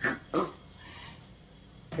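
Two short, breathy bursts of a woman's laughter, close together, followed by a quiet pause.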